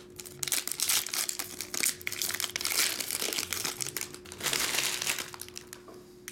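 Foil trading-card pack wrappers crinkling and tearing as O-Pee-Chee Platinum hockey packs are ripped open by hand, a busy crackle that dies away after about five seconds.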